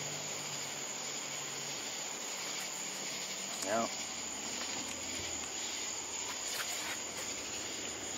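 A steady, even chorus of crickets and other night insects.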